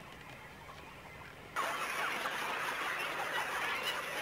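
A colony of white-breasted cormorants at their tree nests calling. A busy chatter of many overlapping bird calls starts suddenly about a second and a half in, after faint quiet background.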